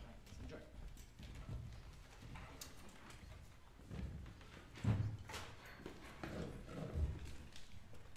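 Footsteps on a stage floor: a few uneven thumping steps as a person walks and steps up onto a conductor's podium, the loudest about five seconds in, with faint shuffling in between.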